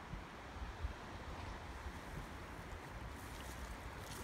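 Faint wind noise on the phone's microphone: an uneven low rumble over a soft, even hiss.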